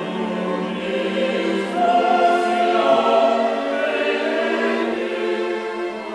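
Mixed choir singing a slow sacred choral passage over a string orchestra, swelling about two seconds in.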